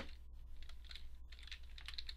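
Computer keyboard typing: a quick run of light keystrokes, over a steady low hum.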